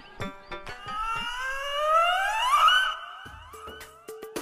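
A comic sound effect: a siren-like tone that slides upward in pitch over about a second and a half, then levels off and fades. A few sharp clicks come before it.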